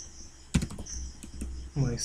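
Computer keyboard typing: a short run of keystroke clicks from about half a second in, as digits are entered into a settings field.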